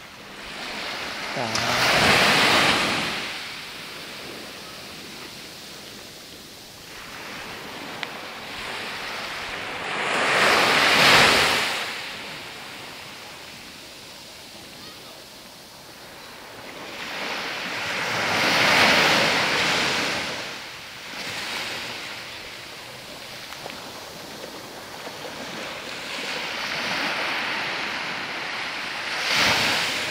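Small waves breaking and washing up a beach, four surges about eight seconds apart, with a steady hiss of water between them.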